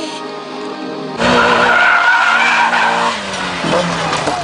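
Music for about the first second, then a Mazda Miata drifting: its engine held at high revs while its tyres squeal through the slide. The sound cuts in sharply and eases off after about three seconds.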